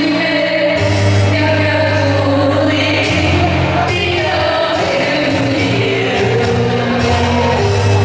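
A woman singing a pop song live over instrumental accompaniment with a steady bass line.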